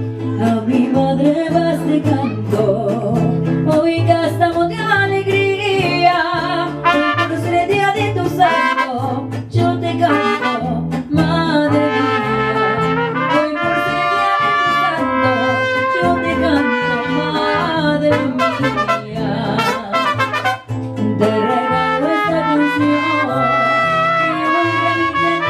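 Live mariachi band playing without a break: trumpets carry the melody over strummed guitars and a deep bass line, with long held trumpet notes in the middle.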